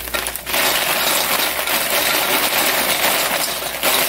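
Dried red chili peppers rustling and crackling as gloved hands toss them with a damp towel in a stainless steel bowl, the brittle pods clicking against the metal. It starts about half a second in and keeps on steadily until just before the end.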